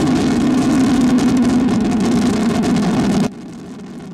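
Rocket engines firing at lift-off, a loud steady rush of noise. About three seconds in it cuts off suddenly and drops to a quieter, steady distant rumble.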